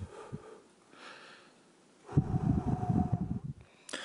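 A man's breathing into a close microphone as he is choked up with emotion. A faint intake of breath comes about a second in, then a heavy, uneven breath out lasting about a second and a half.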